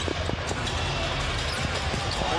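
Steady arena crowd noise with a basketball dribbled on a hardwood court, a few bounces near the start.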